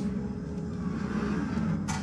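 Sci-fi film soundtrack: a steady low starship hum with faint falling alarm tones, and a short hiss near the end.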